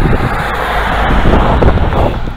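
Wind buffeting a handheld phone's microphone: a loud, steady rumbling rush with no words over it.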